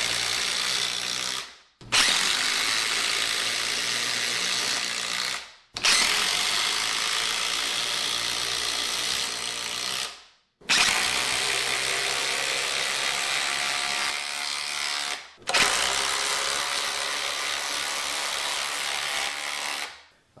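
DeWalt DCF887 brushless impact driver hammering long GRK structural screws into stacked lumber, as a loud, dense rattle. It runs in stretches of about four seconds, one per screw, each cut off by a brief stop before the next screw.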